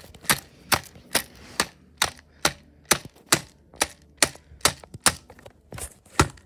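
A steady series of sharp clicks or taps, about a dozen at an even pace of a little over two a second.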